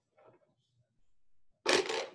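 A small counting object dropped into a container, landing with a single sharp clatter about one and a half seconds in, after a faint tap near the start.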